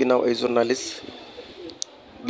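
A man speaking into a handheld microphone, stopping under a second in. A quieter pause follows, with a single sharp click near the end.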